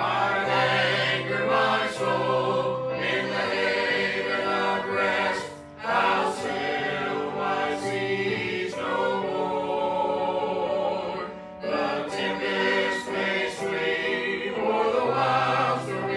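Mixed church choir singing a hymn together, in long phrases with short breaks between them about six seconds apart.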